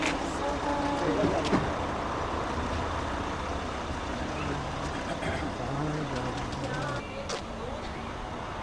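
A motor vehicle engine idling as a steady low rumble, with scattered voices and a few sharp clicks.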